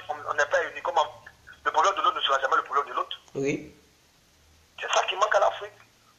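Speech only: a man talking in short phrases with pauses between them.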